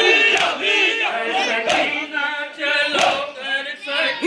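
Crowd of men chanting a nauha (Shia lament) together, with a sharp matam chest-beating strike about every 1.3 seconds, three times.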